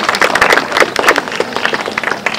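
Audience clapping: many quick, overlapping hand claps.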